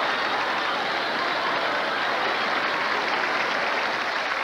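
Studio audience laughing and applauding in one steady, unbroken roar.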